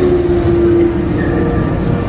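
Loud, steady low rumble with a held droning tone over it that fades out a little past halfway.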